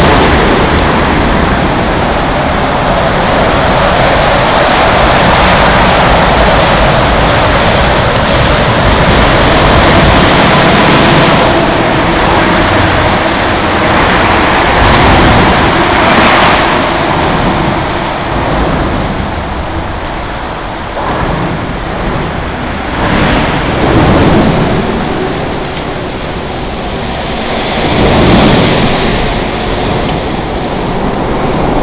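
Steady loud roar of road traffic on the bridge roadway beside the walkway, swelling several times as vehicles pass close by.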